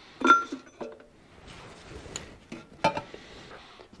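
Metal clinks from steel oil-filter housing parts being handled: one sharp, ringing clink about a quarter second in, then a few softer taps.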